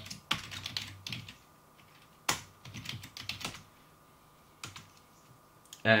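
Keystrokes on a computer keyboard typing into a setup prompt: a quick run of clicks at first, then a few scattered single key presses.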